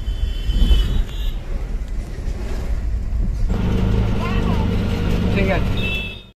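Low rumble of a car ride heard from inside a taxi cab, with voices mixed in. About halfway a steadier hum joins the road noise.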